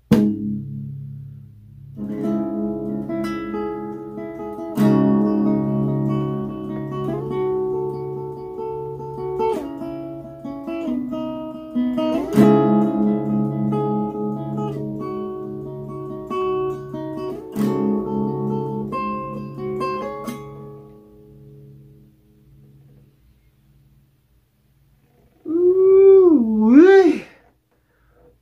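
Acoustic guitar playing a riff over a steadily repeated low bass note, the last chord left to ring out and fade away. Near the end comes a short, loud wavering voice sliding up and down in pitch.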